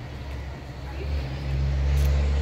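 Low, steady engine hum of a motor vehicle on the street, growing louder from about a second in.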